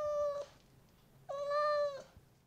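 Two drawn-out, high-pitched, meow-like calls, each holding a nearly steady pitch for just under a second, with a short pause between them.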